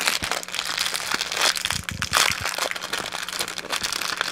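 Small clear plastic bag of silver beads crinkling and rustling in the fingers as it is handled and opened, in quick irregular crackles.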